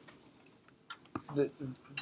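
Speech only: a pause, then a few short, halting syllables from a lecturer starting about a second in, with a faint click just before them.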